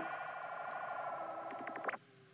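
Warbling electronic signal tone on a telephone line while a call is put through, steady, with a few clicks just before it cuts off near the end.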